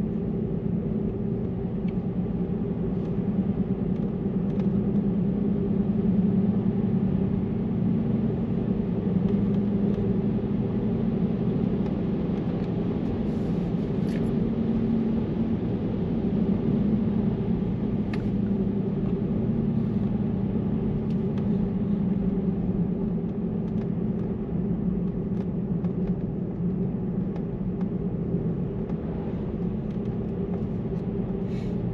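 Steady low tyre-and-road rumble of a car driving on asphalt, heard from inside the cabin.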